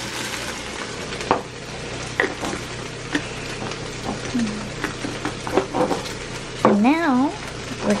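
Chicken breast strips frying in a little olive oil in a stainless steel skillet, a steady sizzle, with a few light knocks.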